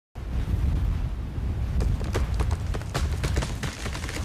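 Tree wood cracking: a quick run of sharp snaps and pops starting a couple of seconds in, over a steady low rumble.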